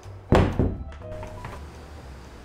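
Two quick, loud thunks about a third of a second apart, over quiet background music.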